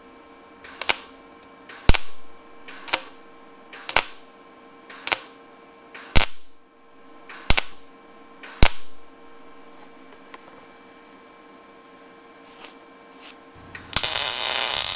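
Lincoln Power MIG 210 MP MIG welder laying short stitch bursts, about eight quick pops roughly a second apart, to fill a hole blown through thin square steel tubing, with the welder turned down. A faint steady hum runs underneath, and near the end a continuous weld starts crackling.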